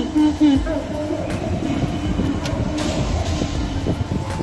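Low, steady road rumble heard from inside a car cabin as it drives through an underground car park, with occasional knocks from the tyres and body. A voice is heard briefly in the first second and a half.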